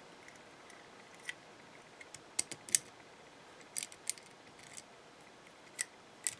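Brass trick padlock being worked by hand: light metallic clicks of a small key turning in its side keyway and the shackle moving, scattered through the quiet, with a quick cluster of clicks about two to three seconds in and a few more around four seconds and just before the end.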